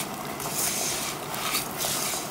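Raw rice being stirred in a pot with a silicone spatula while it is sautéed before the water goes in: a steady scraping and rustling of grains against the pot.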